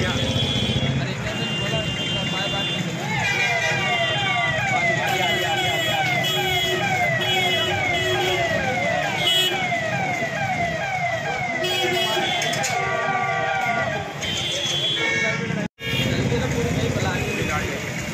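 Emergency vehicle siren in a fast yelp, its pitch sweeping up and down several times a second, starting a few seconds in and stopping about two-thirds of the way through, over street traffic noise and voices. The sound cuts out for an instant near the end.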